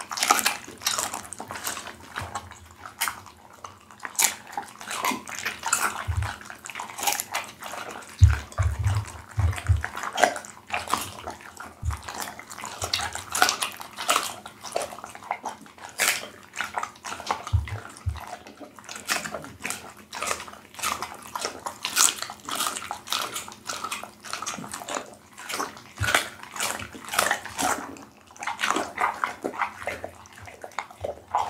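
Pit bull chewing raw duck head close to the microphone: continuous wet, smacking chewing with sharp crackles and crunches of bone, and a few deep thumps around eight to ten seconds in.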